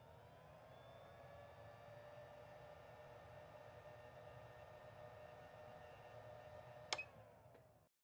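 Very faint logo-intro sound effect: a held, humming tone with several slowly gliding pitches, a short click about seven seconds in, then it cuts off abruptly just before the end.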